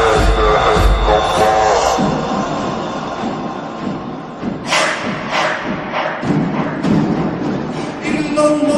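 Energetic nasheed: chanted voices over deep thudding beats, which drop out about two seconds in, leaving a quieter stretch broken by several sharp percussive hits in the second half.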